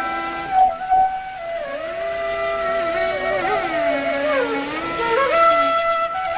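Carnatic instrumental ensemble playing a kriti in raga Abhogi: a bamboo flute carries a melody with sliding ornaments, and a lower melodic line moves with it over steady held notes. Two percussion strokes come about half a second to a second in.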